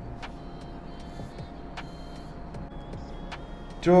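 Pencil sketching a guide line on drawing paper: a few faint, light clicks over a steady low hum of room noise.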